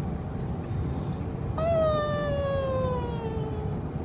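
A woman's voice gives one long, high-pitched whine that slides slowly downward for about two seconds, starting about halfway through. Under it runs the steady road rumble inside a moving car.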